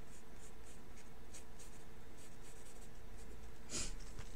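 A pencil sketching on paper: a run of short, light scratching strokes, with one brief louder sound near the end.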